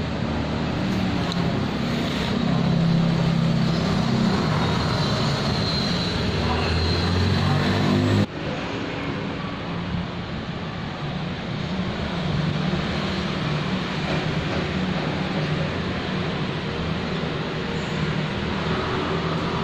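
Steady street traffic noise with a low engine hum, louder in the first half, then dropping sharply about eight seconds in and carrying on a little quieter.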